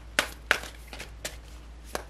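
Tarot cards being shuffled by hand, packets of cards dropped onto the pile in the other hand: four sharp, irregularly spaced slaps.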